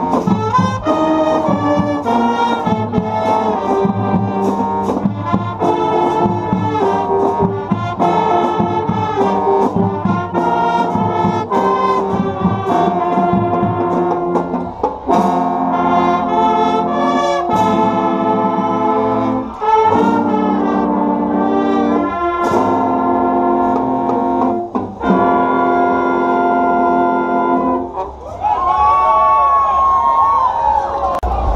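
School marching band (banda marcial) playing a loud piece: massed trumpets and low brass in chords over regular sharp percussive hits. In the second half the band plays accented chords with short gaps between them, and a held note sounds near the end.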